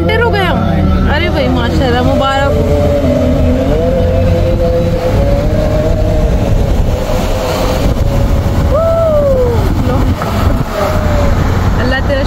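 A voice singing long, drawn-out notes with wavering ornaments and slow pitch glides, over the steady low hum of a car driving.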